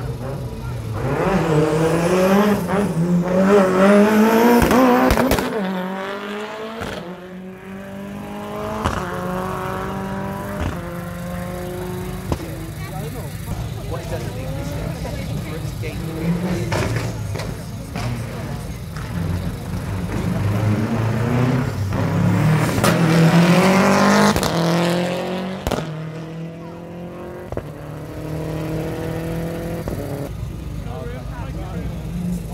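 Rally car engine accelerating hard, its note climbing and dropping back through gear changes in repeated runs. It is loudest about four seconds in and again around twenty-three seconds in, with a weaker run near ten seconds.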